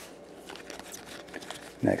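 Baseball trading cards being flipped through by hand, the card stock sliding and flicking against the stack in faint scattered ticks and rustles. A man says "next" near the end.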